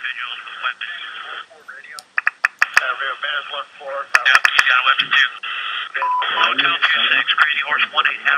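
Radio chatter of a US Army Apache helicopter crew: men's voices over a military radio link, thin and tinny, reporting individuals with weapons and AK-47s. Sharp clicks break in a few times around two to four seconds in, and a short steady beep sounds about six seconds in.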